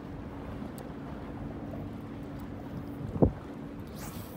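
Wind buffeting the microphone at the waterside, with a faint steady hum underneath that stops just before the end. One loud thump about three seconds in.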